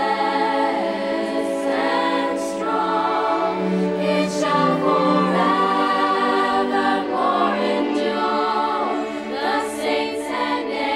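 Choir of young voices singing a slow sacred song over a string orchestra's held notes.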